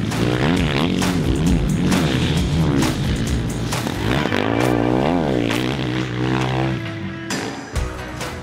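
Kawasaki KX450 single-cylinder four-stroke motocross engine revving up and down as it is ridden hard, its pitch dropping and then climbing again about five seconds in, under background music.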